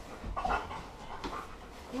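A German Shepherd panting in short breaths, loudest about half a second in.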